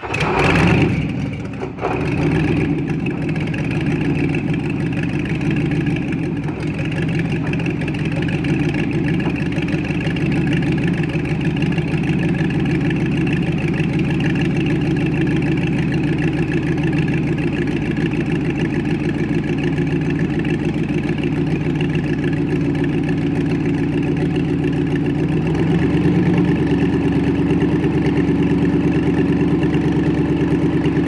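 Piston engine of a 90%-scale two-seat replica Spitfire catching with a sudden loud burst, dipping briefly about a second and a half in, then settling into a steady idle. The engine note steps up slightly louder about 25 seconds in.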